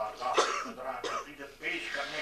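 A man's voice speaking into a microphone, with a short cough about half a second in.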